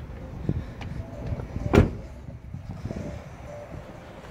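Rear door of a 2011 GMC crew-cab pickup being shut: a single thump about two seconds in, over low outdoor background noise.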